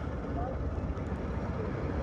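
Steady low rumble of a boat's motor and wind, heard through a muffled phone microphone.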